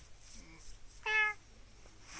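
A cartoon cat's voice-acted meow: one short, loud, high-pitched call about a second in.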